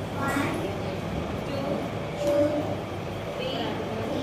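A voice calling out a few short phrases over a steady background rumble of room noise.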